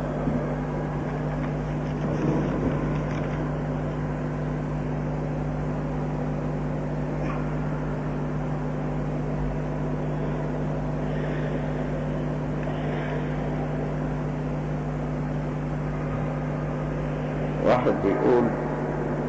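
Steady low electrical hum with an even background hiss from the microphone and recording chain while nobody speaks. There is a faint, brief murmur about two seconds in.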